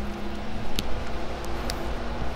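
Steady low mechanical hum with a low rumble beneath it, heard through an open aircraft over-wing exit. Two light knocks come about a second apart as a person steps out through the exit onto the wing.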